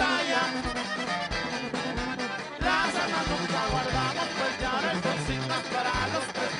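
Live banda-style corrido played by a band, with a drum kit and a sousaphone carrying the bass line.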